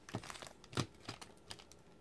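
Sealed trading card packs being handled: a few soft crinkles and light taps of the foil wrappers, spread out through the moment.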